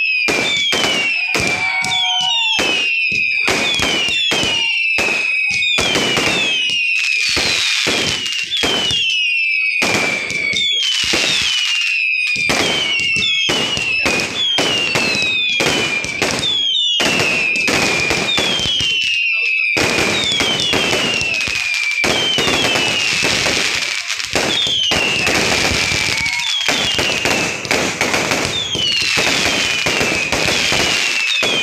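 Continuous barrage of aerial fireworks: rapid loud bangs one after another, with a falling whistle about once a second.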